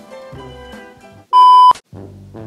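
Upbeat background music, cut about a second and a half in by one loud, steady, high beep lasting under half a second, the kind of bleep used to censor a word. The music drops out just after the beep and comes back near the end.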